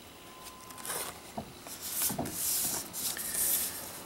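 Paper handling on a table: a stiff album page being turned and postcards shifted, with several soft bursts of rustling and sliding and a couple of light taps, busiest in the second half.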